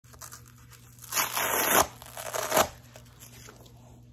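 Hook-and-loop (Velcro) fastener of a neoprene waist trimmer belt being pulled open: two tearing rips, a longer one about a second in and a shorter one soon after.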